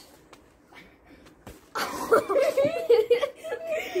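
A quiet lull with a faint tick or two, then laughing and chuckling from about two seconds in.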